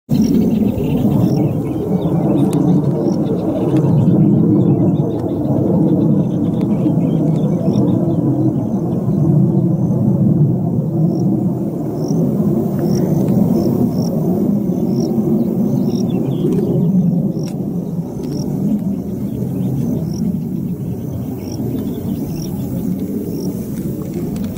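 Wind buffeting the microphone in loud, uneven gusts, with faint high chirps repeating about once a second behind it.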